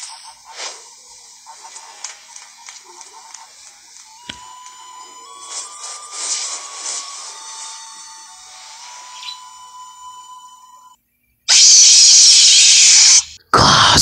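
Quiet soundtrack music of steady held tones and scattered clicks, its tones stepping up in pitch partway through. Near the end come about two seconds of very loud harsh static-like noise and, after a short break, a second loud noisy burst with a falling pitch.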